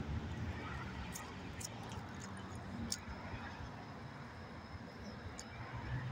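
Faint outdoor background noise: a low steady hum with a few light clicks about a second, a second and a half, and three seconds in.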